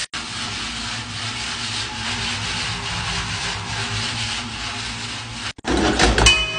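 Large stainless steel pot of water at a rolling boil, giving a steady rushing, bubbling noise with a faint low hum. It cuts out abruptly about five and a half seconds in.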